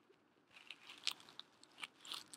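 Faint, scattered small clicks and taps of nail products being handled on a tabletop, about five in all, the clearest a little past one second in.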